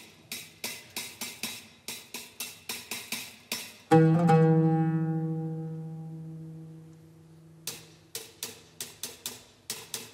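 Solo oud played with a plectrum: a run of single plucked notes, then a loud low note struck about four seconds in and left to ring for about three seconds as it fades. Plucked notes start again near the end.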